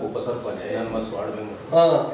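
A man speaking in Telugu in conversation, with no other sound standing out.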